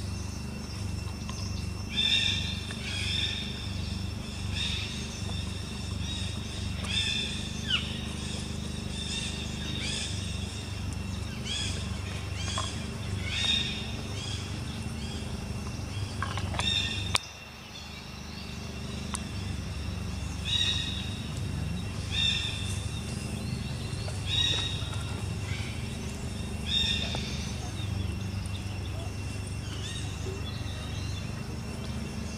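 Long-tailed macaque calling: short high squeals repeated in runs of two to four, over a steady low rumble.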